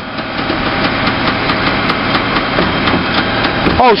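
Rear-loading refuse truck's hydraulic packer blade and engine working under heavy load, struggling to compact an overfull body: a steady, dense mechanical noise. The load is so great that the blade is coming to a standstill and jamming.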